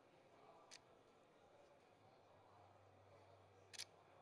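Near silence, with a faint click about a second in and a sharper quick double click near the end: a camera's shutter firing as a photo is taken.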